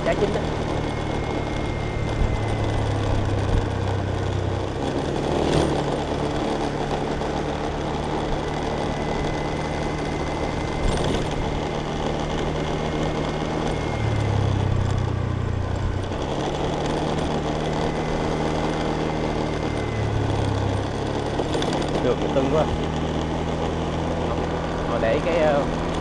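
Motorbike engine running at a steady cruising speed along a paved road, with road and wind noise; its low note grows louder three times for a second or two.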